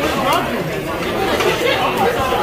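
Chatter of several voices talking at once around a restaurant table, with a couple of brief light clicks.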